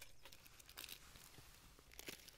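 Faint rustling and scraping of small packed items being handled in a metal survival tin, with light crinkling of plastic packaging.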